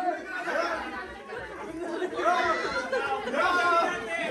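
Chatter: several people's voices talking over one another, with no single clear speaker.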